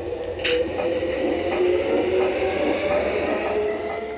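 LGB garden-scale model electric locomotive and coaches running past on outdoor track: a steady, slightly wavering motor-and-gear whine with wheel rumble and a sharp click about half a second in. It grows louder early on and fades near the end as the train goes by.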